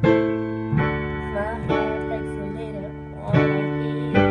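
Digital piano played with both hands: slow, sustained chords, four struck in turn, the first and the last the loudest.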